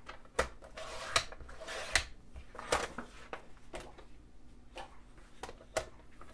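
Sliding paper trimmer cutting cardstock: the blade head is drawn along its rail with a rasping cut of about a second. Sharp clicks and knocks from the trimmer rail and paper are spread through the rest.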